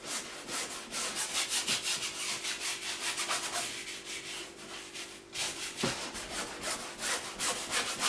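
Stiff bristle brush scrubbing oil paint onto canvas in quick, short scratchy strokes, about four a second, with a brief pause a little after five seconds.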